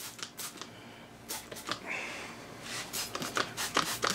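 Hand trigger spray bottle squirting soapy water in a series of short, quick sprays onto an outboard lower unit under air pressure, a soap-bubble leak test.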